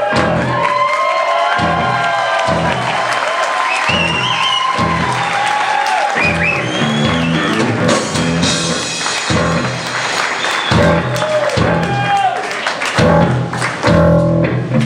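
Live surf rock band playing, with deep repeated bass notes and drums, and the audience cheering over the music.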